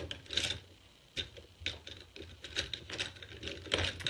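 Close handling noise: irregular rubbing and scratching with scattered small clicks, as makeup items or the phone are handled near the microphone.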